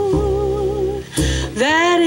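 A woman singing a jazz ballad over acoustic guitar and low bass notes: she holds a note with wide vibrato, breaks off about a second in, then slides up into the next phrase near the end.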